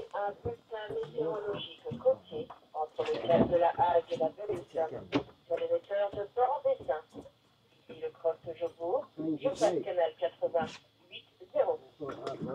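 Men's voices talking in short phrases, with a brief pause in the middle and a faint steady high-pitched tone underneath.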